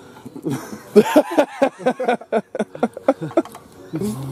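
Men laughing in short, choppy bursts with a few brief clicks and knocks, and no clear words.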